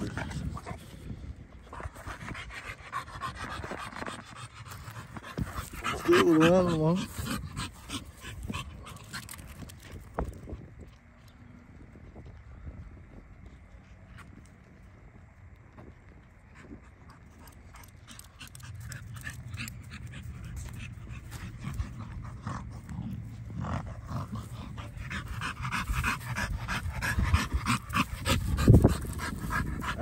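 A dog panting hard. The panting is loud at first, with a brief wavering voice-like sound about six seconds in. It grows faint for several seconds in the middle, then builds up loud and close again near the end.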